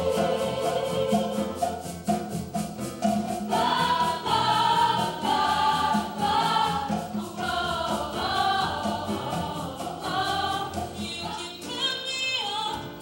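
A show choir singing a song in many voices together, over an accompaniment with a steady beat. Near the end it cuts to a solo female singer.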